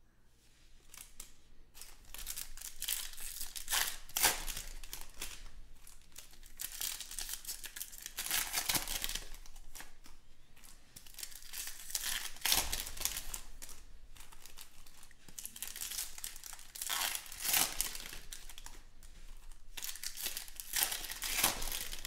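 Trading-card pack wrappers crinkling and tearing as packs are opened by hand and the cards slid out, in repeated crackly bursts that begin about two seconds in.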